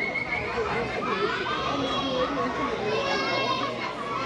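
A crowd of young children chattering and calling out over one another, many high voices at once with no single clear speaker.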